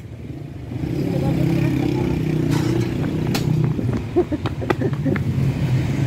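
A motor vehicle engine running nearby, a steady low hum, with a few short clicks near the middle.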